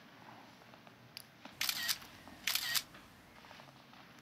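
Smartphone camera shutter sound, taking a picture twice, the two shots just under a second apart.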